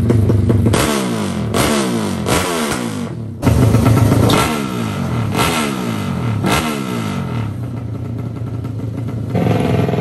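Drag-bike engines at the start line being blipped one after another: each throttle blip sends the revs up and lets them fall away, about once a second. A second bike's engine takes over a little over three seconds in, and near the end a third engine runs at a steadier, higher idle.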